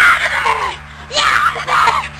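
Boys yelling and screaming during a backyard ball game, in two loud bursts: one right at the start and another about a second in.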